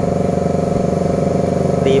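A steady mechanical drone, like an engine or motor running at a constant idle, holds on without a break or change in pitch.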